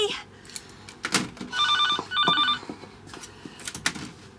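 Landline telephone ringing once with a double ring: two short trilling bursts a fraction of a second apart, about halfway in. A sharp knock comes just before the ring, with a few more near the end.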